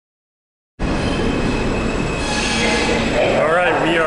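A subway train running, a steady loud rumble that starts suddenly about a second in. A voice speaks over it near the end.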